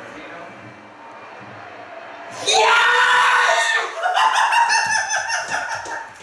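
A man and a boy screaming in celebration of a goal, starting suddenly about two and a half seconds in after low background sound and going on loudly to the end.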